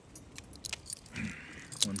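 Metal handcuffs clinking and clicking as they are closed on a man's wrists: a few sharp metallic clicks, two pairs of them about a second apart.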